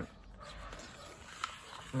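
Faint rustling of a matte-finish paper dust jacket being slipped off a paperback manga volume.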